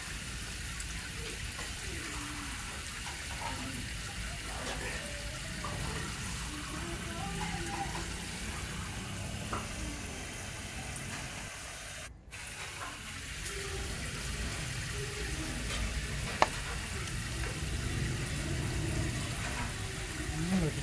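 A steady crackling hiss, with faint voices in the background, a brief dropout about twelve seconds in and a single sharp click a few seconds later.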